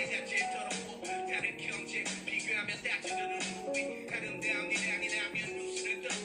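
Live hip-hop performance played back from a live stream: a male rapper delivering a verse into a microphone over a backing track of slow held melodic notes.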